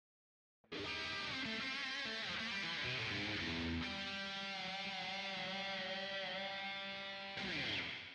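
Outro music led by an electric guitar, starting suddenly about a second in and holding long, ringing chords.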